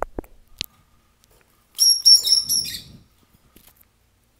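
Lovebird chirping: a quick run of shrill, high chirps about two seconds in, lasting about a second. A couple of sharp clicks come just before it, near the start.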